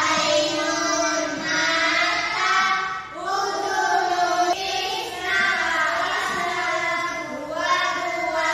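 A young girl's voice singing a melody in long held notes, with short breaths between phrases.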